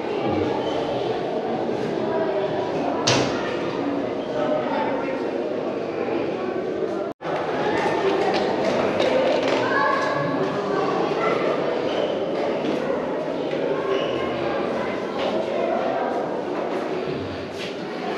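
Indistinct voices of people talking in a large echoing room, with one sharp thump about three seconds in.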